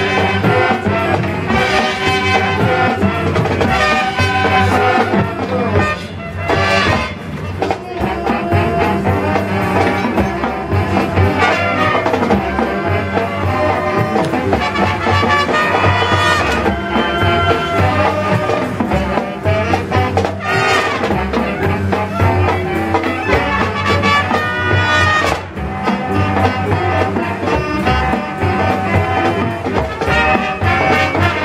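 Marching band playing a brassy jazz arrangement, with trumpets and trombones carrying the melody over percussion.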